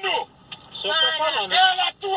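Speech from a played-back audio recording of a heated argument: a voice talking from about half a second in, after a brief pause, with a thin, phone-like sound.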